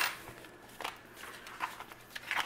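Paper cash being handled: a few faint, brief paper rustles and light taps.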